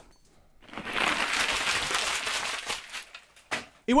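A parcel's wrapping being torn open, with rustling and crinkling for about two seconds that fades out, then a single brief click.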